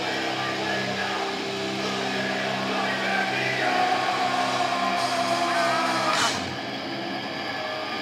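Live metal band playing loud through the PA, with long held guitar chords that break off about six seconds in.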